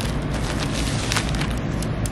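Plastic poly mailer bag crinkling in a series of short crackles as hands press and smooth it flat on a table, over a steady low hum.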